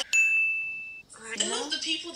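A single bright ding: one clear, bell-like tone that rings and fades for about a second, then cuts off suddenly.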